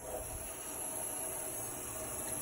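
Kitchen tap turned on, water running steadily from the faucet into a stainless steel sink as a stained microscope slide is rinsed under the stream.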